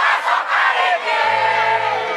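A live crowd cheering and shouting at close range. A little over a second in, a steady held note from the band comes in under the crowd noise, the start of the guitar-led music.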